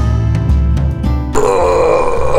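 Background music with an acoustic guitar; about a second and a half in, a man breaks in with a loud, drawn-out groan, like a waking stretch or yawn.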